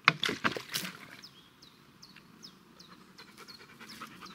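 A quick flurry of sharp spraying, splashing sounds in the first second as a Doberman is doused with water to cool him off, then the dog panting quietly while a small bird chirps over and over.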